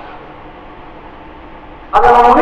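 A pause in a man's amplified sermon speech. Only a steady, even background noise of the room and sound system remains, and his voice comes back abruptly at the very end.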